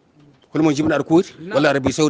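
A man speaking after a short pause at the start.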